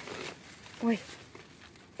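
Cucumber leaves and vines rustling briefly as a hand pushes through them, with a woman's short exclamation "oi" about a second in.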